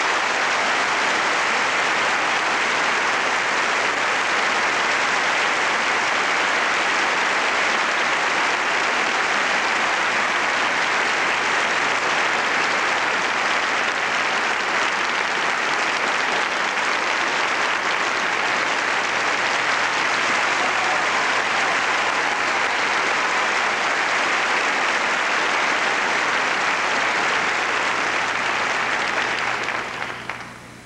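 Theatre audience applauding steadily, a dense even clapping that cuts off suddenly near the end.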